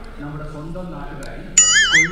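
Quiet talking in the background, then about one and a half seconds in a sudden loud electronic warbling tone, its pitch wobbling rapidly up and down: an edited-in sound effect.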